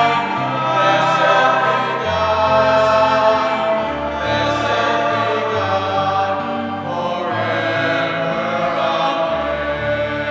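Church choir singing an offertory hymn with sustained chordal accompaniment, the bass line stepping to a new note every second or so.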